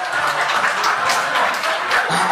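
Room full of seated guests applauding, a dense, continuous patter of many hands clapping.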